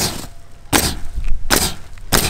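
Pneumatic coil roofing nailer firing three times in a steady rhythm, about three quarters of a second apart, driving nails through architectural asphalt shingles.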